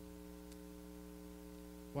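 Steady electrical mains hum, a low buzz made of several fixed tones that holds unchanged throughout.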